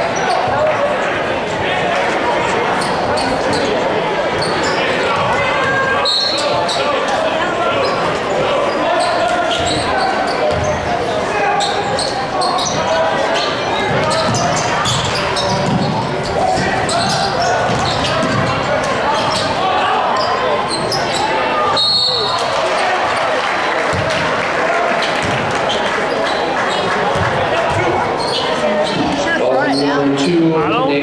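Basketball dribbled and bounced on a hardwood gym floor, with short sharp strikes through a steady hum of spectator chatter, echoing in a large gymnasium.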